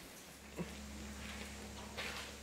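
Faint background with a steady low hum that starts about a quarter second in, and one short click shortly after.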